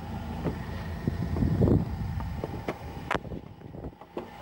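Low outdoor rumble with wind on the microphone and a few light clicks, then one sharp click about three seconds in as the car's exterior door handle is pulled and the latch releases.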